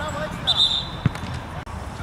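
Football players shouting on the pitch, with a short high whistle about half a second in and the thud of a ball being kicked about a second in.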